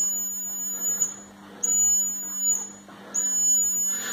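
High-pitched electronic buzzer of a DIY laser tripwire alarm circuit, sounding because the laser beam to the LDR is broken by a finger. It sounds in three stretches, cutting out briefly about a second in and again near three seconds.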